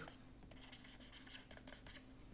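Faint scratching of a stylus writing on a tablet screen, with a small tick near the end, over a low steady room hum.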